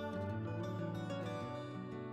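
Background instrumental music: a gentle plucked-string, acoustic-guitar piece with sustained notes.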